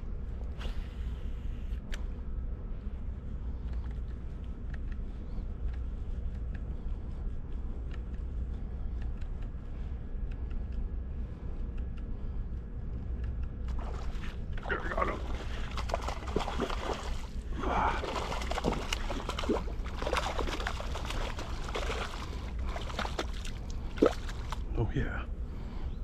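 A hooked bass thrashing and splashing at the pond surface while being reeled in, a busy flurry of splashes in the last ten seconds or so, over a steady low rumble.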